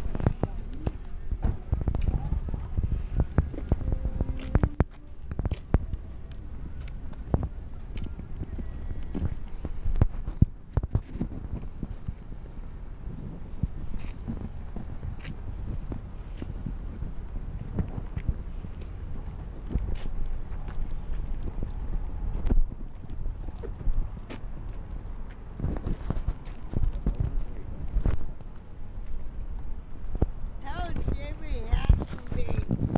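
Low rumble and irregular knocks and rattles picked up by a camera mounted on an electric bike's handlebars as the bike is handled and moved.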